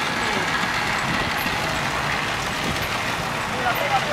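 Steady outdoor background noise with faint voices of people at a distance.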